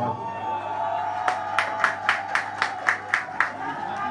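Crowd clapping in unison: about nine sharp claps at roughly four a second, starting just over a second in and stopping near the end, over a steady held tone.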